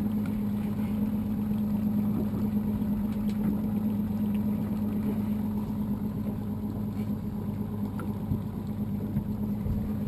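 Evinrude 150 outboard motor idling with a steady, even hum.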